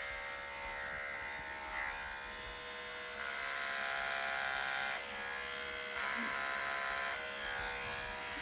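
Wahl Stable Pro electric hair clippers buzzing steadily as they shave a deer hide, cutting the hair deeper to reach a lighter shade. The tone shifts a little about three seconds in and again about six seconds in.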